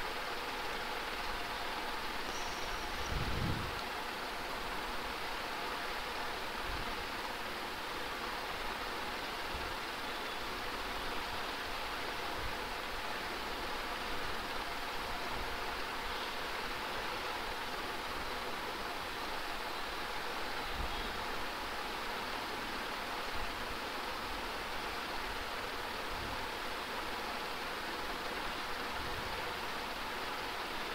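Steady background hiss from an open microphone, with a few faint low thumps, the clearest about three seconds in.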